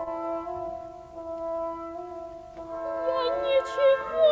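Orchestral woodwinds and horns holding soft sustained chords that shift a step now and then. About three seconds in, a soprano enters with a wavering vibrato.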